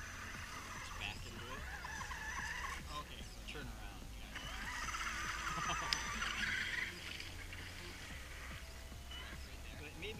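Radio-controlled monster truck driving through mud, its motor and gears whining up and down in pitch with the throttle. The whine is loudest about six seconds in as the truck passes close by, then fades as it drives off.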